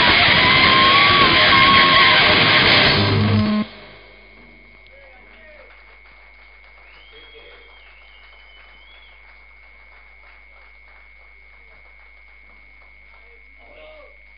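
Live heavy metal band playing loud, with distorted electric guitars and drums, stopping suddenly about three and a half seconds in. After that, only faint room noise remains, with a steady high whine.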